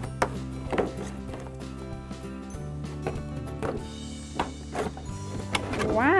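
Background music with several short knocks and taps from a cardboard toy box being opened and its lid handled.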